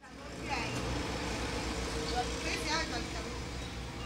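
Outdoor background noise: a steady low rumble, with faint high-pitched children's voices talking off to the side, about half a second in and again around the middle.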